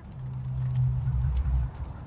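Low engine hum and rumble of a motor vehicle, fading out about a second and a half in, with faint light ticks above it.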